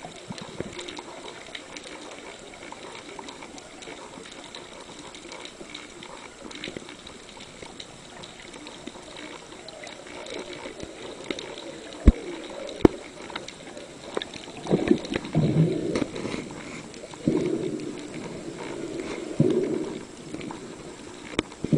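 Underwater sound picked up by a diver's camera: a faint crackle of many small clicks, two sharp clicks about twelve seconds in, then louder gurgling bursts of water noise in the last few seconds.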